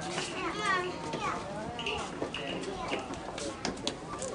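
Overlapping chatter of a crowd of children and adults, with high child voices among them and no clear words, plus a few sharp clicks near the end.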